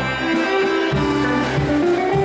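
Live band playing a tune led by alto saxophone, with plucked guitar and a moving bass line underneath.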